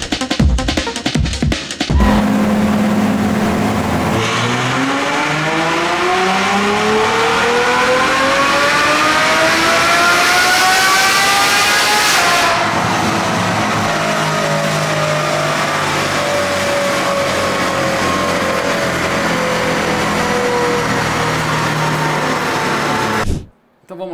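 Ferrari F12's naturally aspirated V12 (F140) on a chassis dynamometer doing a full-throttle power run with a remapped ECU. After a brief steady hold, the engine note rises smoothly for about eight seconds, then the throttle closes and the engine winds down for about ten seconds until the sound cuts off just before the end. A couple of seconds of beat-driven music come first.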